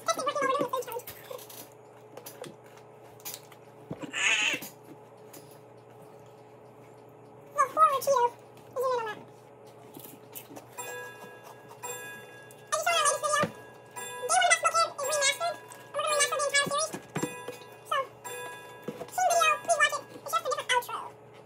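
Short wordless vocal cries with falling pitch, and a sharp rush of breath about four seconds in: pained reactions to a burning mouth. From about eleven seconds in, music with held notes plays under more such cries.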